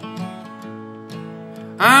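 Acoustic guitar strummed quietly, its chords ringing between light strokes; a man's singing voice comes back in loudly near the end.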